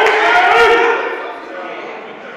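Several people's voices calling out in a large hall, with a few faint knocks in the first second. It dies down after about a second.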